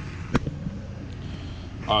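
1981 Challenge EH-3A three-spindle hydraulic paper drill running, a steady low hum from its hydraulic unit, with a single sharp click about a third of a second in as the drill is cycled.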